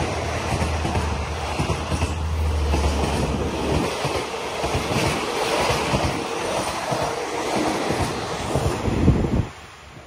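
Passenger railway coaches passing close at speed: wheels rumbling and clattering over the rails, with a low steady hum for the first four seconds. A sharp loud knock about nine seconds in, then the sound drops away suddenly.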